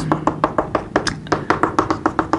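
Chalk tapping against a chalkboard in quick short strokes while dashed circles are drawn: a rapid, uneven run of sharp taps, several a second.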